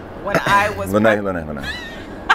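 Speech only: a woman talking, with one drawn-out syllable falling in pitch.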